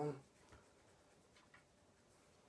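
Quiet room with a few faint, light clicks spread over about a second, after a spoken word at the start.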